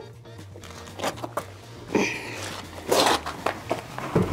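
Orange lifting strap webbing being slid and dragged under a heavy wooden cabinet across a concrete floor: several short scraping swishes, the loudest about three seconds in, over quiet background music.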